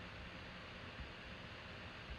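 Steady low background hiss: room tone, with one faint click about halfway through.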